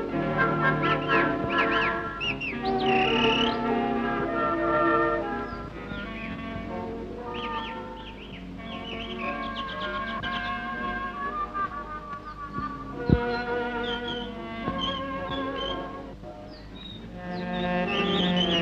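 Cartoon soundtrack music: an instrumental melody with short chirping, whistle-like glides woven in. A single sharp click comes about two-thirds of the way through.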